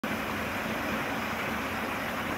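Steady background noise: an even hiss with a low hum underneath, unchanging throughout.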